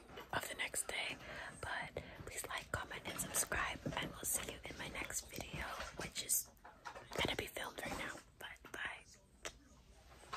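A woman whispering close to the microphone, in short phrases with brief pauses.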